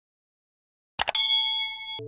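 A double mouse-click sound effect about a second in, then straight away a bright bell-like ding. The ding sounds several pitches at once and slowly fades: the notification-bell chime of a subscribe-button animation.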